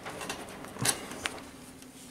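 Light handling noise from small metal parts on a workbench: two brief taps, the louder a little under a second in, over a faint steady hum.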